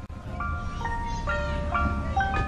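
Ice cream van jingle: a simple chiming tune of single held notes, stepping up and down, starting about half a second in over a low steady hum.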